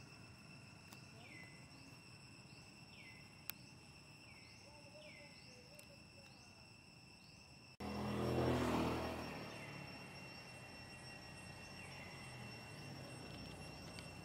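Outdoor ambience of insects buzzing steadily at two high pitches, with a short falling chirp repeated about once a second during the first half. About halfway through, the sound cuts abruptly and a loud low rushing swell rises and fades over a couple of seconds.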